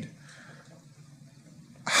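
A pause in a man's speech into a microphone: low room tone, then his voice starts again near the end.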